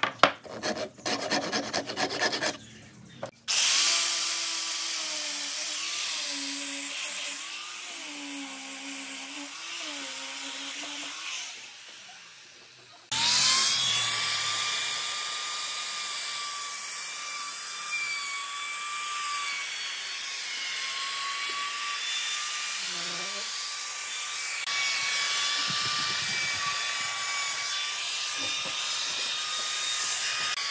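A quick run of knocks at the start, then a power tool whining with a wavering pitch. After a short lull about 13 seconds in, a compact wood trim router runs steadily, cutting along the edge of a pine board.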